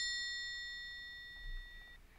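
Triangle sound effect ringing after a single strike: a high, shimmering tone that fades slowly and cuts off near the end.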